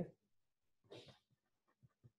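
Near silence, with one short faint hiss about a second in and then a few faint ticks near the end as a marker pen starts writing on paper.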